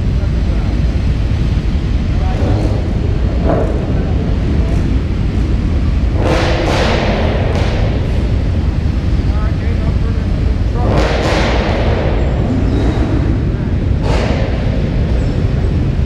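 Many car and truck engines running at once inside a large hall, a steady low rumble, as show vehicles drive out together. Two louder rushes of engine noise come about six and eleven seconds in.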